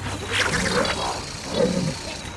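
Film sound effect: an alien creature growling in two rough bursts, the first about half a second in and the second near the end.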